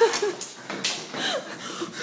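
Short, broken whimpering cries that bend in pitch, mixed with a few light knocks.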